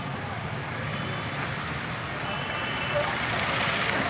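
Steady background noise, a hum and hiss with a few faint high tones, growing somewhat louder in the last second.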